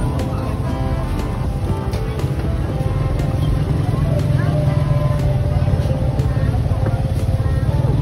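Busy open-air market ambience: a steady low engine rumble from passing motor traffic, with people talking and music playing.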